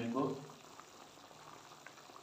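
Chicken curry boiling in a pot on the stove, a faint steady bubbling with small pops.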